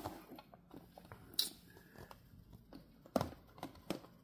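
Faint handling noise: a few soft clicks and small rustles as the replica belt is held and moved, the sharpest click about a second and a half in.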